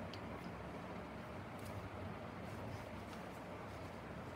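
Quiet room tone with a steady low hum and a few faint, light clicks as small plastic toy cups are handled and set down on the floor.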